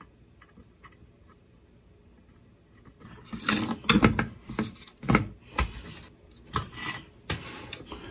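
Bench handling noises while soldering: a few faint ticks, then from about three seconds in a run of irregular knocks, rubs and clatters as the soldering iron is put aside and a spool of solder is set down on the bench.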